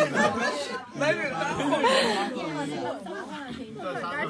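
Several people talking over one another in casual group chatter.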